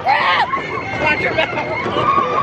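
Riders on the Big Thunder Mountain Railroad mine-train roller coaster shouting and yelling, over the steady noise of the moving train.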